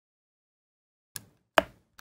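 Three short taps of a glue-pot pen tool against a paper card, starting about a second in, the middle one the loudest.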